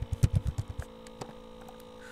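Computer keyboard typing: a quick run of keystrokes in the first second and one more click a moment later, over a steady electrical hum.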